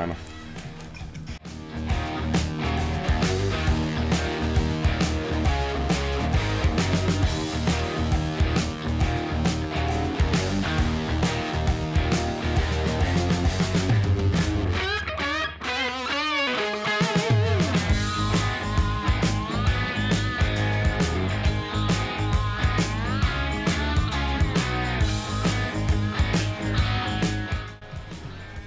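Background rock music with guitar and a steady beat, coming in about a second and a half in; it briefly drops away near the middle with a wavering, sliding sound before the full beat returns.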